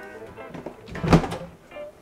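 Refrigerator door, the kind that can open from either side, being worked by hand, with one solid thud about a second in.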